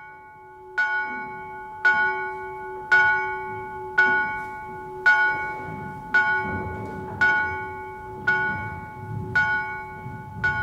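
A single bell tolling, struck about once a second, nine strokes of the same pitch, each ringing on into the next.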